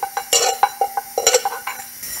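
Rapid, irregular light clicks and clinks of small hard objects, several a second, over a faint steady hum.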